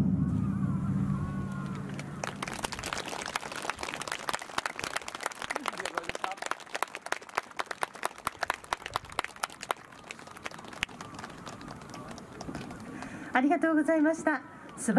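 Scattered audience applause of irregular claps after a taiko drum piece, thinning out and dying away near the end. A low ringing from the last stroke fades away in the first two seconds.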